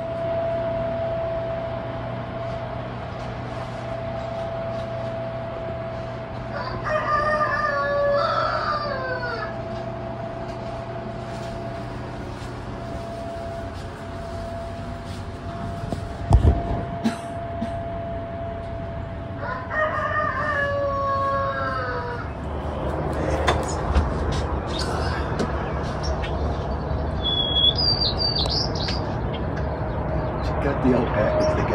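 A rooster crowing twice, once about seven seconds in and again about twenty seconds in, each crow about two seconds long and dropping in pitch at the end. A steady hum runs underneath, with a single thump midway and small-bird chirps near the end.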